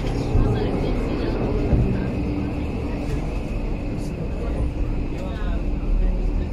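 Steady rumble and hum inside a Pilatus Railway rack (cogwheel) railcar while it runs on the rack track, with passengers talking in the background.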